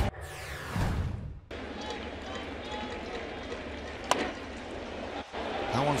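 Ballpark crowd murmur in a broadcast mix, with a short sweeping whoosh as the picture cuts and a single sharp crack about four seconds in, like a bat meeting the ball.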